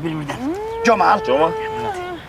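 A voice drawing out one long note: it rises, holds steady for about a second and a half, then falls away. A second person talks briefly over it.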